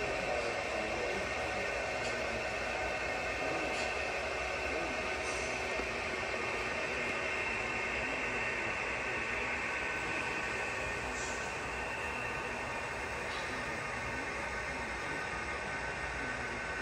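Steady running noise of a long model coal train rolling along the layout, with a few light clicks scattered through it.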